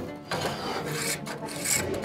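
A spokeshave pulled in several short strokes along a wooden chair spindle held in a shaving horse, scraping off fine shavings in finishing cuts.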